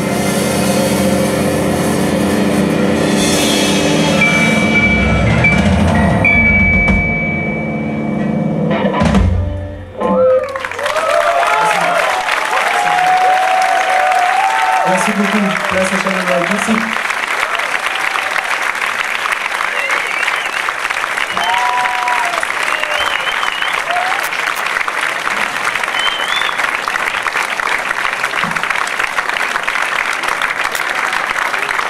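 Live rock band of electric guitars, violin and drums playing the last bars of a song and ending on a final hit about nine seconds in. Then the audience applauds, with cheering shouts and whistles, until the end.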